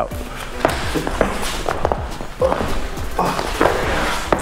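Background music over scuffling feet and several dull thuds on a padded mat floor as a bear hug from behind is broken and the grabber is taken down to the mat.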